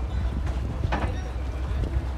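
Steady low rumble of a boat's motor with wind buffeting the microphone, and indistinct voices in the background.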